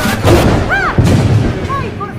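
Stage thunder sound effect: a loud crash near the start and a second one about a second in, trailing into a low rumble.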